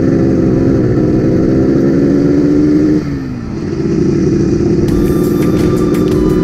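A 1974 Yamaha RD350's air-cooled two-stroke parallel twin running under way. About three seconds in, the engine note slides down in pitch and dips briefly, then pulls on steadily again at a slightly lower pitch.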